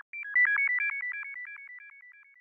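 Short synthesizer logo jingle: a fast run of high, beep-like notes, about eight a second, hopping among three pitches. It peaks about half a second in and then fades away like a dying echo.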